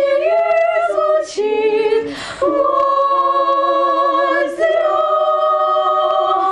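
Girls' choir singing a cappella in several parts, holding long sustained chords. The chord changes about two and a half seconds in and again a little before five seconds, with a brief break just before the first change.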